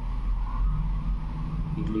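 A steady low background hum with no distinct event in it.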